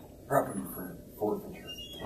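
Two short, quiet vocal sounds about a second apart, in a pause between louder speech.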